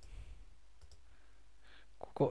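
A few faint clicks of a computer pointing device as the text cursor is placed in a document.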